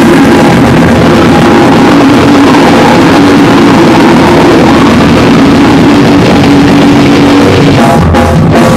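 A live rock band playing loud, continuous music: a dense, unbroken wall of sound with no pauses.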